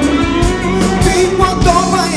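Live pop-rock band playing, with a saxophone melody and singing over electric guitar and drums.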